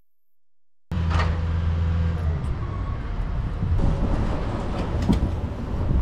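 Street traffic: a low vehicle rumble that starts abruptly about a second in, with a steady low hum over the first second and a half and a few scattered knocks.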